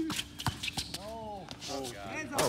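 Men's voices calling out during a basketball game, with a few short, sharp knocks from the ball and players' feet on the court.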